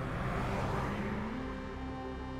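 A car passing and fading away, over soft background music with a steady low drone.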